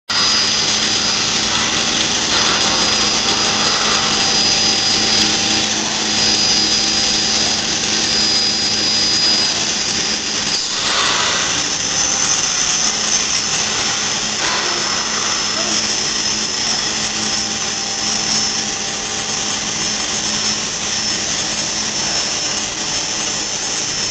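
High-frequency welded pipe mill running: a loud, steady machine noise with a constant low hum and a thin high-pitched whine above it.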